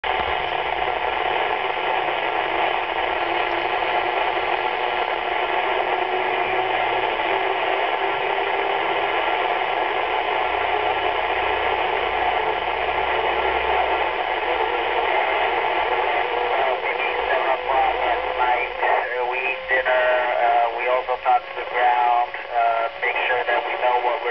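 Yaesu FT-212RH two-metre FM transceiver's speaker hissing with static from a weak downlink signal from the International Space Station. About two-thirds of the way in, a voice starts breaking through the static.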